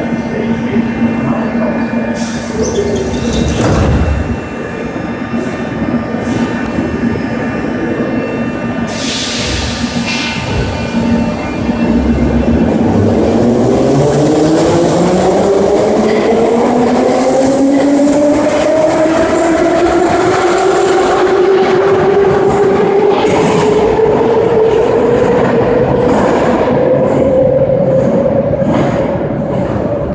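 81-717/714 metro train standing with a steady hum, then pulling away from the platform. Its traction motors give a whine of two tones that rise steadily as it accelerates, levelling off near the end.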